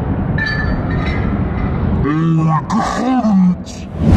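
Steady arcade din of machines and room noise with faint electronic tones. About halfway through, a man's voice breaks in with a few short excited calls that rise and fall.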